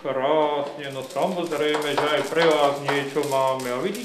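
Speech only: a man talking in a low voice, with a brief pause just before the end.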